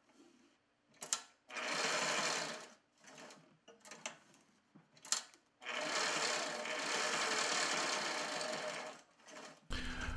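A Sailrite Ultrafeed LS-1 sewing machine stitches through one-inch webbing in two runs. First comes a short burst about a second and a half in, then a longer steady run of about three and a half seconds starting near the middle. A few sharp clicks fall before and between the runs.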